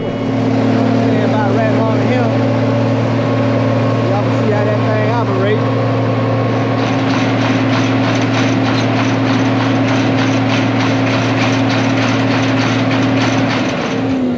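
John Deere cotton picker running with a loud, steady, unchanging hum while its full basket is dumped. A fast, regular ticking rattle joins in about halfway through, and the hum cuts off near the end.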